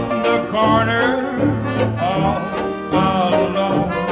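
Traditional jazz band playing an instrumental passage between sung lines: brass melody over banjo rhythm.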